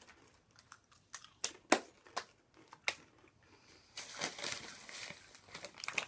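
Crinkly plastic snack-chip bags being handled: a few sharp crackles in the first half, then a longer rustle near the end as a bag is picked up.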